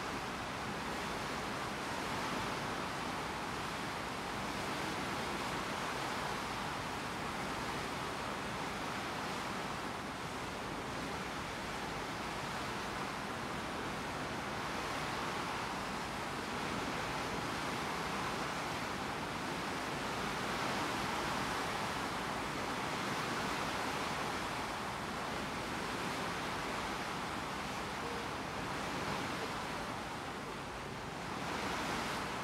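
Steady rush and hiss of a ship's bow wave as the hull cuts through the sea, swelling and easing gently every few seconds.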